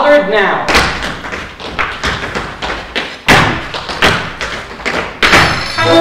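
A chorus line of dancers' shoes stamping and tapping on a stage floor in a break where the band drops out: a run of loud, irregular stamps. The brass band comes back in at the end.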